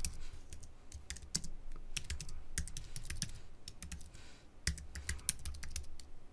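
Computer keyboard typing: runs of quick keystrokes, with a short pause about two-thirds of the way through.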